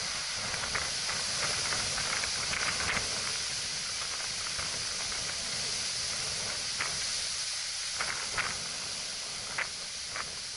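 Steady rushing hiss of wind and water around a small sailing yacht under way, with a few short ticks scattered through it.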